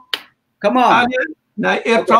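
Men talking over a video call, with one short, sharp click just after the start before the talk resumes.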